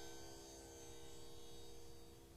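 Faint sustained drone tones: the tanpura's strings ringing on and slowly dying away just after the singing stops, over a low steady hum.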